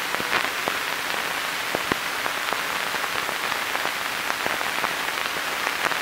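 Steady hiss with scattered irregular clicks and pops, a few a second: surface noise of a 16 mm film's optical soundtrack running over blank leader, the crackle coming from dust and scratches on the film.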